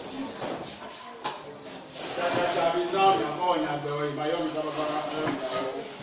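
Many students' voices talking over one another in a classroom. The chatter is lighter at first and grows louder and denser about two seconds in.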